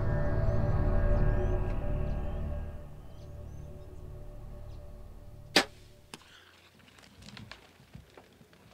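Soundtrack music with low sustained tones fades out over the first three seconds. About five and a half seconds in comes a single sharp crack of a compound bow being shot, followed by a few faint clicks.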